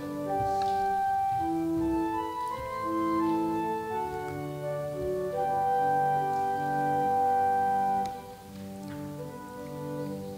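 Organ playing slow, sustained chords, growing softer about eight seconds in.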